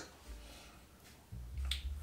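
A quiet pause broken by a single short, sharp click near the end, over a faint low rumble.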